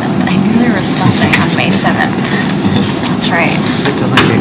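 Indistinct, low voices with scattered fragments of speech too unclear to make out, over a steady low rumble.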